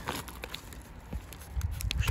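Faint crinkling and a few light clicks of a plastic snack-bar wrapper being turned in the hands, over a low background rumble that grows near the end.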